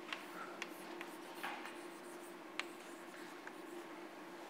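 Chalk writing on a blackboard: faint scratching with short sharp taps as the chalk strikes the board, over a steady low hum in the room.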